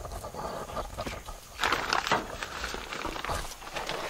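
Manure being shovelled off the bed of a small utility vehicle: a few scraping, thudding strokes of the shovel, the loudest about halfway through, over a low rumble.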